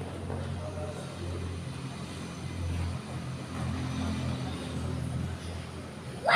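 Low, steady engine rumble of a vehicle, swelling slightly in the middle.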